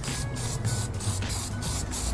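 Aerosol can of Krylon clear glaze spraying in several short hissing bursts, laying a light coat on a small metal piece.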